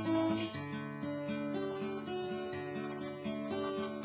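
Acoustic guitar playing a chord accompaniment on its own, with no voice, the notes ringing on through each chord and the chord changing every second or so.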